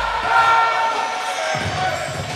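Background music with a crowd cheering over it; a deep bass note comes in about one and a half seconds in.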